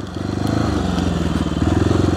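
1994 Honda XR650L's single-cylinder four-stroke engine running as the bike rides along, with a little more throttle about one and a half seconds in.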